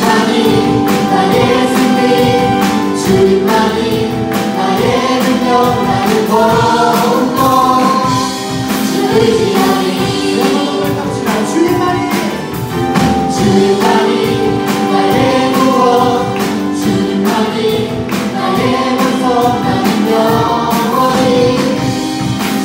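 A praise team of male and female singers singing a Korean worship song together, backed by a live band with a steady drum beat.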